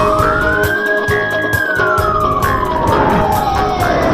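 A single siren wail in a news bumper rises quickly to a peak in about the first second, holds briefly, then falls slowly through the rest, over music with a steady beat.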